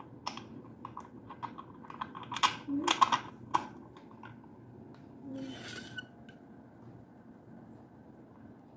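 Quick run of small clicks and taps from hands handling wires and a plastic terminal connector block on a ceiling fan's motor housing, densest and loudest in the first half. A short rustle follows about halfway through.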